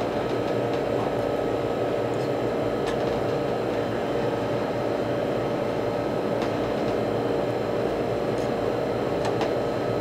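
Steady machine hum with several constant tones, holding level throughout, with a few faint light ticks.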